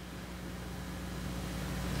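Quiet room tone: a steady low hum with a faint even hiss, no voice.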